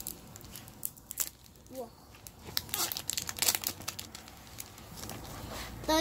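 Thin clear plastic card packet being torn open and handled, giving a scatter of sharp crinkles and crackles that are thickest about halfway through.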